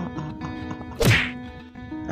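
A single loud whack about a second in, a cartoon impact sound effect, over soft background music.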